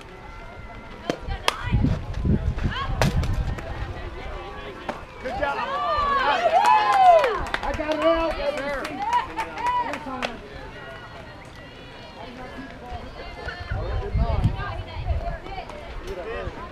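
Several voices shouting and cheering in long, rising-and-falling calls about six to ten seconds in, after a few sharp knocks in the first seconds.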